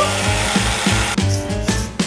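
Aerosol whipped-cream can spraying with a steady hiss that stops a little over a second in, over background music with a steady beat.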